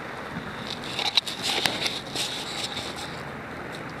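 Gasoline splashed from a plastic gas can onto a small kindling fire, which flares up with crackling and a few sharp pops from about one to three seconds in, over a steady background hiss.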